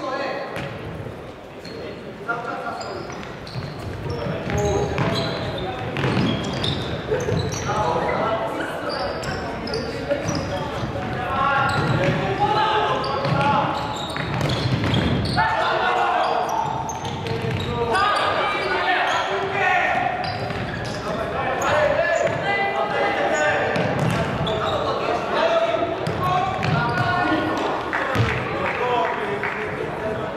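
Futsal ball being kicked and bouncing on a wooden sports-hall floor, the thuds echoing in the large hall, with players' voices calling out.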